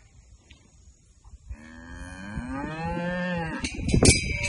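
A cow moos once, starting about one and a half seconds in. It is one long call of about two seconds that rises at first and then holds a steady low pitch.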